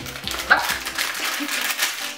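Plastic snack pouch crinkling as it is pulled open, with a short exclamation about half a second in over background music.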